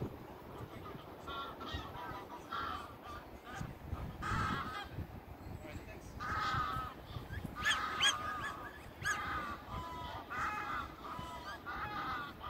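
Geese calling repeatedly across open water, a run of short pitched calls coming every half second to a second, busiest in the second half.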